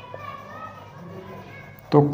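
A marker squeaking thinly on a whiteboard as a sentence is written, in faint, wavering high tones.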